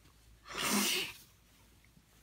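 A small dog sneezing once, a short hissing burst about half a second in.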